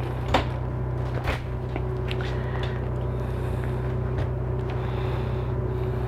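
A steady low hum, with a few faint clicks and knocks in the first couple of seconds.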